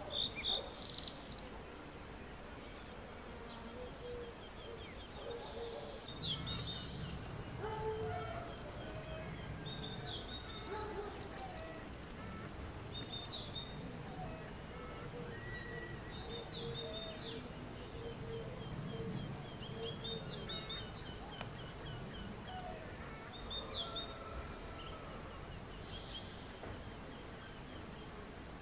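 Several birds calling outdoors: one gives a short sharp call every few seconds over a fainter trilling, with other calls lower down. Low rumbling comes and goes in the background.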